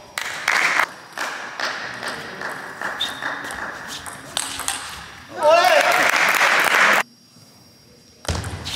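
Table tennis rally: a plastic ball clicking back and forth off the bats and table. About five seconds in, a loud shout and clapping rise up, then cut off suddenly.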